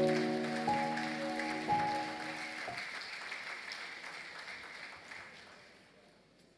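Music with held, sustained chords that change about once a second and stop about two and a half seconds in, over audience applause that fades away by the end.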